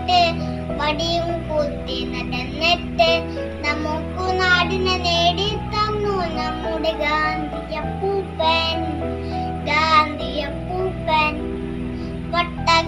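A young boy singing a song over recorded backing music with steady chords.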